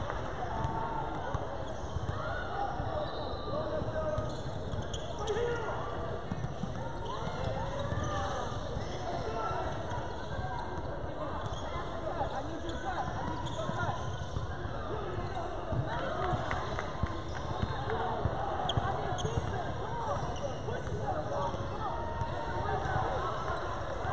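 Basketball dribbled on a hardwood gym court, the bounces mixed with the continuous chatter and calls of players and spectators in a large gym.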